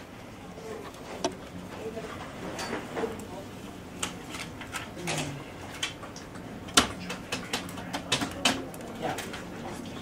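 Classroom room tone with scattered small clicks and taps, the sharpest about seven seconds in and a quick run of them around eight seconds, over a faint murmur of voices.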